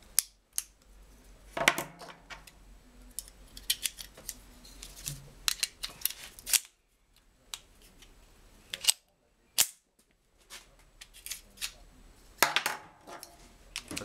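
A series of sharp metallic clicks from loading a Browning Model 1910 pistol: 7.65 mm (.32 ACP) cartridges pressed one by one into its magazine, a round put into the chamber, and the magazine pushed into the grip.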